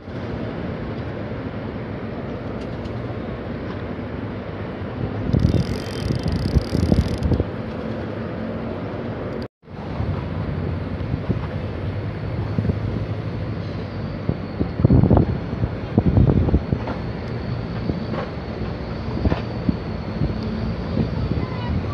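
Outdoor ambience: wind rumbling on the microphone in gusts over a steady low engine hum. The sound drops out briefly about halfway through.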